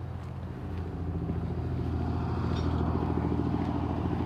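A motor vehicle engine running steadily at a constant low pitch, growing louder over the first two seconds and then holding level.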